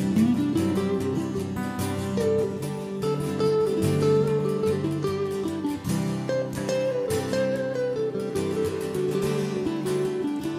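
Instrumental break of a folk song played on guitars: acoustic guitars strumming chords while a lead guitar picks out the melody.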